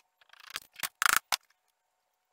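Manual caulking gun clicking and scraping as construction adhesive is squeezed out, with a louder sharp clack about a second in.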